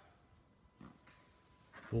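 Quiet room tone between a man's spoken phrases, with a faint steady tone and one brief soft sound about a second in.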